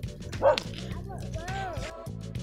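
A short, sharp animal call about half a second in, then a rising and falling whine near the end, over steady background music.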